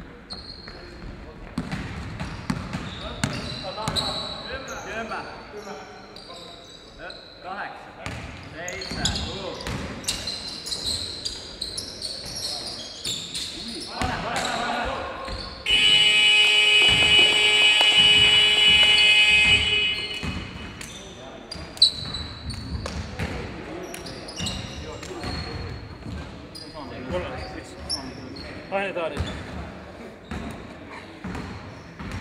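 Sneakers squeaking, a ball bouncing and players shouting in a sports hall. Halfway through, a loud electronic game horn sounds steadily for about four seconds, then stops.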